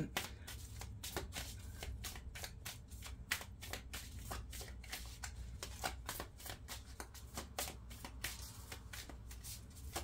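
A deck of oracle cards being shuffled by hand, a steady run of light card-on-card clicks and slides, several a second, as the cards are mixed before one is drawn.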